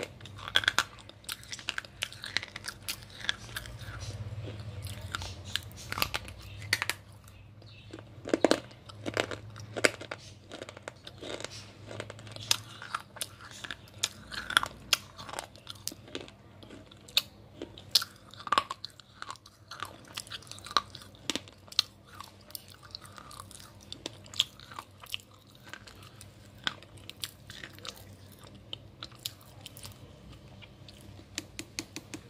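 Dry slate pencil being bitten and chewed close to the microphone: many irregular, sharp crunches.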